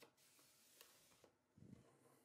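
Near silence, with a few faint ticks and a soft knock near the end from a dry plate holder being handled as its dark slide is pushed in.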